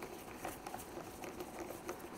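Faint small ticks and scrapes of a 5/16-inch nut driver turning the bolt that holds a lawn mower engine's plastic air filter cover in place.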